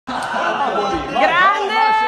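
Voices talking and chattering, with one long, high, held call near the end.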